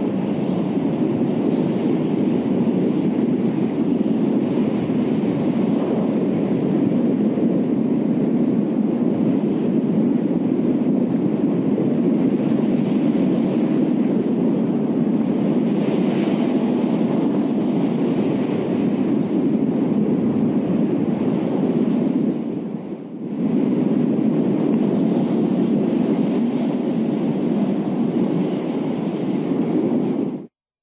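Steady, deep rushing wind noise of a storm sound effect, dipping briefly about 23 seconds in.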